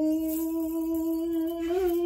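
A woman's voice holding one long, steady vocal note that lifts slightly near the end and is then cut off abruptly.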